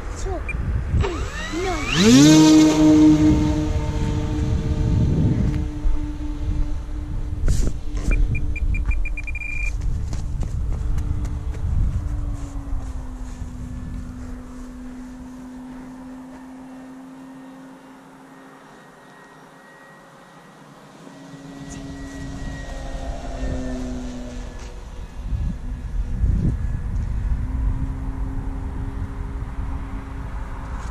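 E-flite Carbon-Z Cub SS radio-controlled plane's electric motor and propeller throttling up sharply about two seconds in for takeoff, then a steady whine. The whine drops slightly in pitch and fades as the plane flies away, and grows louder again in the last several seconds as it comes back.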